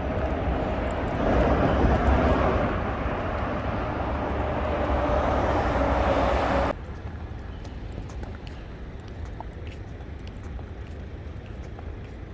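Running noise of a moving vehicle: a low rumble with a faint steady hum. It cuts off suddenly about seven seconds in, leaving quieter city street ambience.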